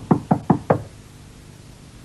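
A quick series of sharp knocks, about five a second, like rapping on a wooden door, ending within the first second.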